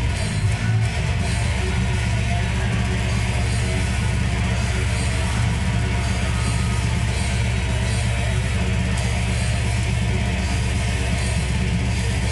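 Distorted electric guitar playing a fast, steady heavy-metal rhythm riff.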